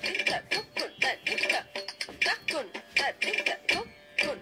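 Music for classical Indian dance: a voice sings in bending, ornamented phrases over quick, uneven percussive strikes.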